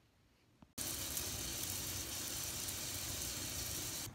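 Shower water spraying: a steady hiss that starts abruptly about a second in.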